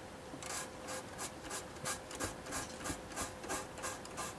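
Fingertip rubbing back and forth over a scale model's panelled surface, scrubbing off a wash, in quick strokes about three a second.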